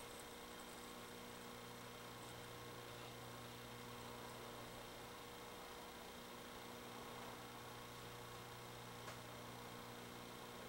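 Faint, steady electrical mains hum under low hiss, close to room tone, with a faint tick about nine seconds in.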